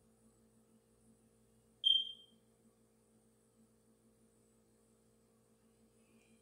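A single short, high-pitched beep about two seconds in, dying away quickly, over a faint steady low hum.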